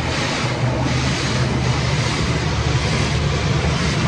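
Automatic car wash spraying water and foam over the vehicle, heard from inside the cabin: a steady rushing spray with a low machine hum underneath.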